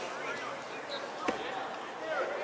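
A single sharp thud of a football being struck, about a second and a quarter in, with players' shouts in the background.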